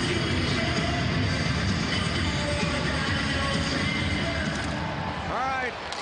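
Music played over a hockey arena's public-address system during a stoppage before a faceoff. It thins out about five seconds in, when a commentator's voice comes in.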